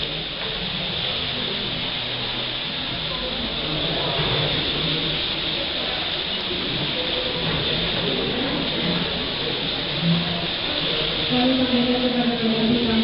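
Background music with held notes that shift every second or so, over a steady hiss, with indistinct chatter from people in the room.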